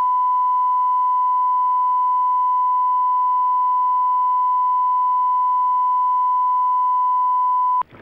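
Broadcast line-up tone: a loud, steady electronic beep held at one unchanging pitch for about eight seconds, cutting off just before the end. It marks the end of the committee room's live audio feed.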